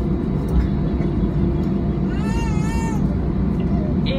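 Steady low rumble inside the cabin of an Airbus A320 taxiing after landing, the engines and rolling wheels heard through the fuselage. A single drawn-out voice sound cuts in about two seconds in.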